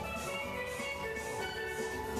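Caribbean music led by steel pan, with a steady beat about twice a second.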